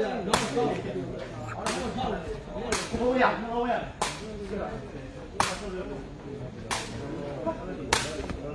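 Sepak takraw ball being kicked in a rally: sharp cracks about every second and a third, over a murmur of crowd voices.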